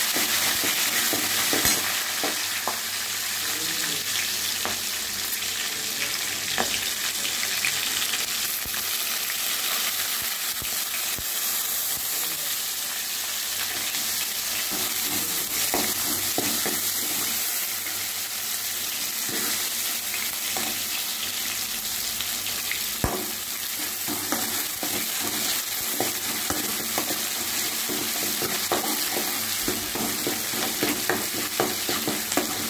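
Crushed ginger, curry leaves and dried red chillies sizzling steadily in hot oil in a metal wok. A metal ladle stirs them, with scattered clicks and scrapes against the pan.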